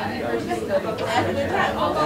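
Several overlapping conversations at once: the chatter of small groups of people talking around tables, with no one voice standing out.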